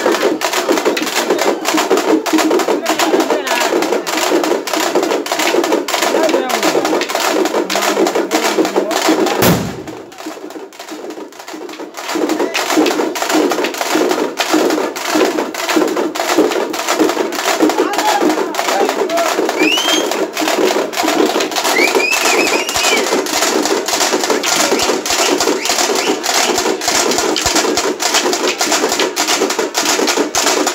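Rapid, continuous drum beating at a festival, mixed with the voices of a crowd. The drumming drops away briefly about a third of the way through, then resumes.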